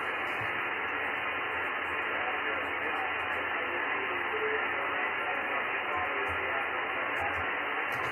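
Steady hiss from an amateur radio transceiver's speaker receiving the RS-44 satellite's single-sideband downlink, narrow and cut off above the voice range, with a weak distant voice buried in the noise.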